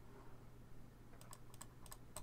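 A handful of faint, quick clicks at a computer, bunched in the second half, over quiet room tone with a low steady hum.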